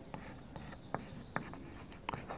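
Chalk writing on a blackboard: faint scratching with a few short, sharp taps.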